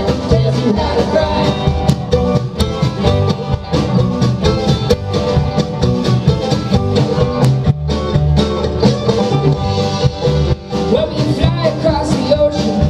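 Live acoustic string band playing an instrumental break: banjo, acoustic guitar, mandolin and upright bass, with a busy run of sharp picked or struck notes over a steady bass line.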